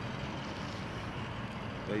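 Steady low rumble and hiss of background vehicle noise, with a single spoken word at the very end.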